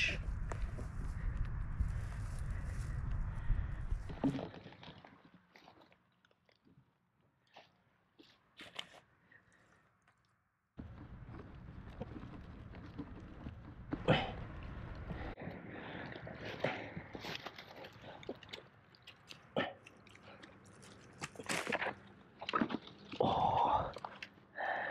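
Dry pine needles and twigs crackling and snapping in irregular crunches as a hand digs a porcini (king bolete) out of the forest litter. A low rumble on the microphone runs through the first four seconds and again for a few seconds around the middle, with a near-quiet stretch between.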